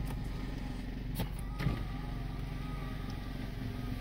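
Car engine idling, heard from inside the cabin as a steady low hum, with a couple of light taps between one and two seconds in.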